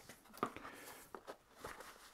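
Faint rustling and a few soft ticks of a waxed canvas pipe pouch being rolled up by hand and its tie strap wrapped around it.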